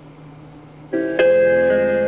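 Pre-recorded music starting to play from a cassette in a Marantz PMD221 mono portable cassette recorder. It comes in suddenly about a second in, after a quiet moment, with held notes.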